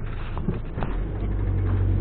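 Suzuki Alto's engine and tyre noise while driving: a steady low drone that grows a little louder about a second in.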